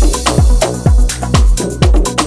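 Ethnic deep house music with a steady four-on-the-floor kick drum, about two beats a second, and light percussion between the kicks.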